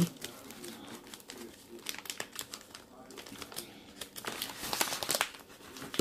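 Tissue paper rustling and crinkling as it is unwrapped by hand, in irregular crackles that get busier about four to five seconds in.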